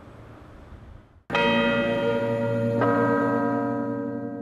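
A bell-like chime of several tones ringing together, struck suddenly about a second in and again near three seconds, then ringing on and slowly fading: the opening of a TV programme's closing jingle.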